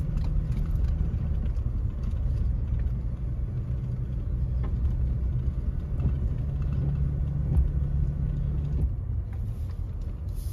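Car driving over a snow-covered road, heard from inside the cabin: a steady low rumble of engine and tyres.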